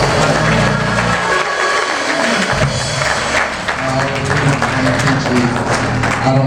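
Live church worship music with drums, and hands clapping along. The bass and chords drop out for about a second partway through, then come back in.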